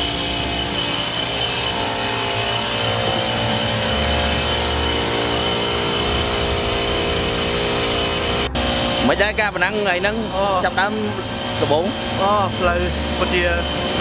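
Rally pickup's engine running steadily at idle, with a thin steady high whine over it. About eight and a half seconds in, the sound cuts sharply and a man's voice takes over.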